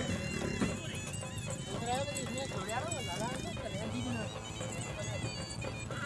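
Several horses trotting on a dirt field, their hooves clip-clopping under a mix of voices and music.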